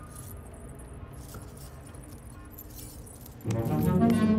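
Light jingling of bridal bangles over a low, steady car-cabin hum. About three and a half seconds in, louder background music comes in.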